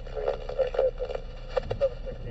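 Railroad scanner radio speaker carrying a trackside defect detector's automated voice reading out the axle count, garbled because another radio user is transmitting over it. The voice sounds thin, like a radio.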